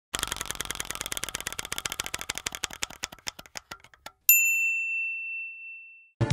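Sound-logo effect: rapid ticking that slows and thins out over about four seconds, then a single bright bell ding that rings and fades for nearly two seconds.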